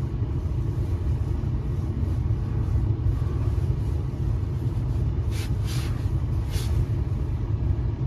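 Steady low rumble in a parked car's cabin, with two faint soft rustles about five and a half and six and a half seconds in.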